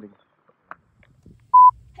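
A single short, loud electronic beep, one steady pure tone lasting a fraction of a second, about a second and a half in.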